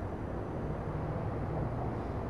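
Steady low outdoor background rumble, with a faint low hum coming in about half a second in.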